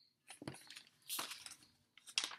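Paper pages of a large picture book rustling and scraping faintly as the book is handled and the page is turned, in a few short strokes about half a second and a second in.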